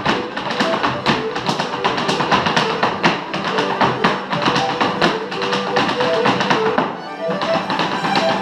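Irish step dancing: rapid, rhythmic taps of the dancers' shoes on a wooden floor over traditional Irish instrumental music.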